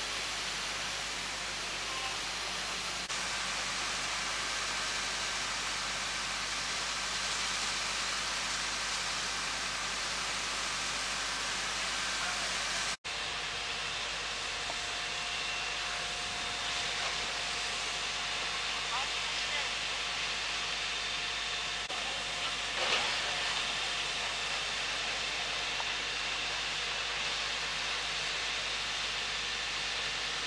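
Steady hiss of a fire hose spraying water onto charred, collapsed roof timbers. About thirteen seconds in, it cuts to a steady wash of fireground noise: an aerial ladder's water jet and fire engines running, with a faint steady hum.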